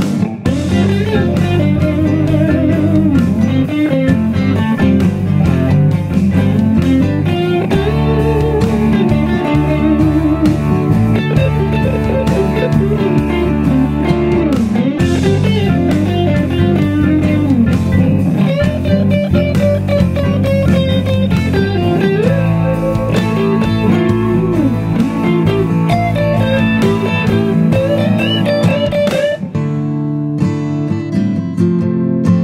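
Instrumental break of a blues-rock song: a lead electric guitar solo with string bends and vibrato over the backing band.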